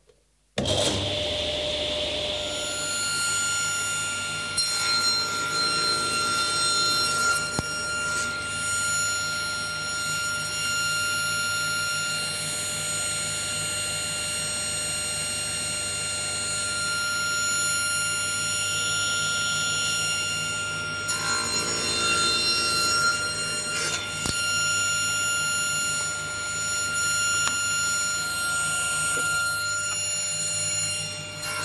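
Excalibur table saw switched on about half a second in, its motor and blade spinning up to a steady whine that runs on. The tilted blade cuts a box mitre into wood twice, a louder rasp around five seconds in and again around twenty-one seconds in.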